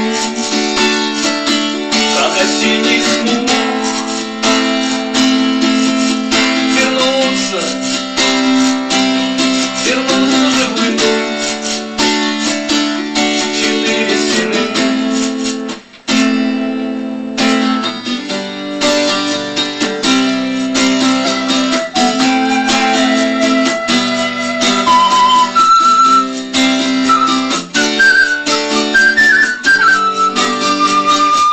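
Acoustic guitar strummed quickly and continuously, with a brief break about sixteen seconds in. Near the end a few high, held melody notes join over the strumming.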